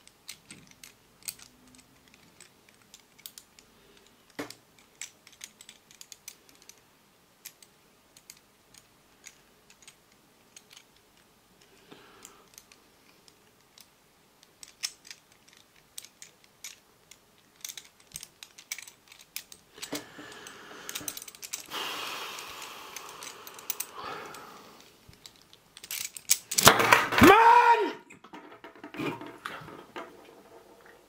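Light metallic clicks and taps from a Hanayama Cast Marble puzzle as its cast metal pieces and steel ball are turned and pushed in the hands. About twenty seconds in, it is shaken in a rattling run lasting several seconds. A louder burst with a wavering pitch follows near the end.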